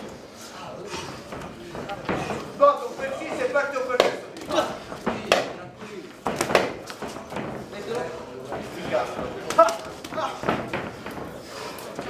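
Gloved punches landing in a boxing bout: several sharp smacks at irregular moments, under shouting voices.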